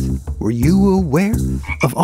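Cartoon-style frog croaking: a few pitched croaks in a row, each swooping down and back up in pitch.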